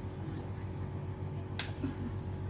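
A steady low hum with one sharp click about one and a half seconds in.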